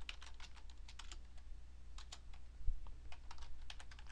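Typing on a computer keyboard: a run of quick, irregular key clicks as a short phrase is typed in.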